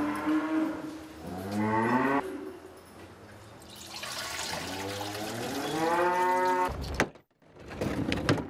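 Dairy cows mooing in a cowshed: two long moos, the first rising in pitch at its end, the second starting about four seconds in. The sound breaks off abruptly near the end, followed by a few sharp clicks.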